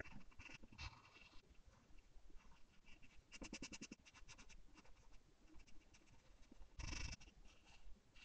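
Graphite pencil scratching on paper, faint: a run of quick back-and-forth shading strokes a little over three seconds in, lighter single lines in between, and a short, louder stroke near the end.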